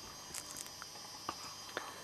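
A few faint, short clicks, a small cluster early and two single ones later, over a faint steady electronic hiss and whine.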